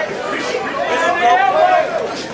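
Ringside crowd shouting during an amateur boxing bout: several raised voices calling out over one another, with no clear words.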